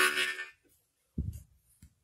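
The last note of a blues harmonica phrase fading out within the first half second, then near silence broken by a short, low thump a little over a second in.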